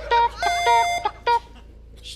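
Short electronic beeps of a game-show countdown timer, with a longer, buzzy time-up tone about half a second in, marking the end of the 30-second memorising time.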